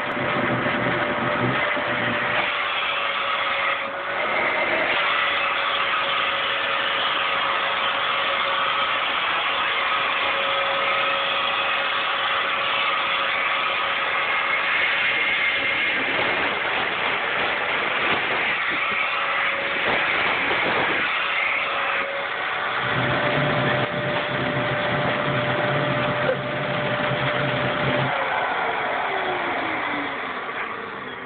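Stick vacuum cleaner running steadily with a constant whine, its brush nozzle being drawn over a kitten's fur. Near the end the whine glides down in pitch.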